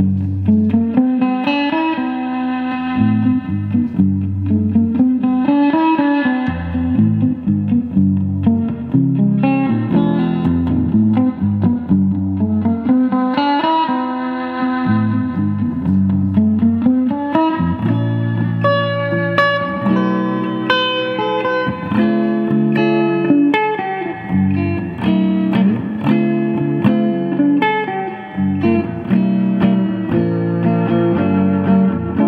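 Japanese-made Gretsch 6120 reissue hollow-body electric guitar played solo through an amp: ringing chords with wavering pitch in the first half, then busier picked chords and single-note lines from about halfway through.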